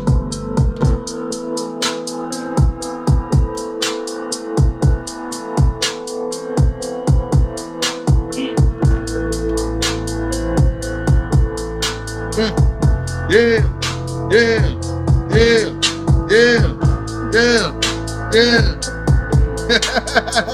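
Trap beat playing from an Ableton Push 3: rapid hi-hat ticks over deep 808 kicks and a held synth chord. About two-thirds of the way in, a repeating melodic figure that swoops up and down in pitch comes in.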